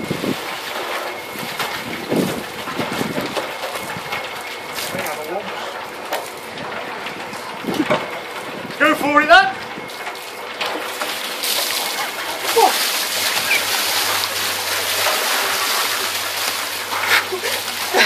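Water sloshing and splashing in a tipped cement mixer drum, with brief voices about halfway through.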